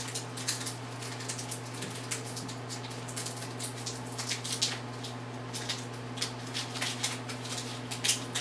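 Light, irregular crinkling and rustling of trading-card booster packs being handled and picked through, over a steady low electrical hum.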